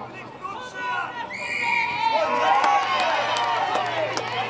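A short, steady whistle blast about a second and a half in, then many voices shouting at once from players and spectators at a rugby league match, with a few sharp knocks among them.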